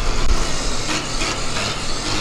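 Steady vehicle noise: a low rumble under a hiss, with a few faint knocks.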